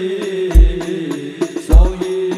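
Sholawat devotional song performed live: a sustained, chant-like sung melody over deep drum beats about a second apart, two of which fall here.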